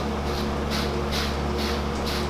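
Slicker brush swishing through a dog's thick curly coat in upward strokes, about two a second, over a steady low hum.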